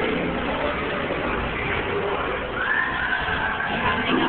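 Dark-ride soundtrack: a dense mix of recorded effects and background noise, with one sustained high animal-like cry that rises and then levels off, starting about two and a half seconds in.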